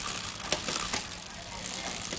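Chain running over the spinning rear cassette of a Giant TCR 6500's 10-speed Shimano Tiagra drivetrain during a drivetrain test, with a couple of faint clicks.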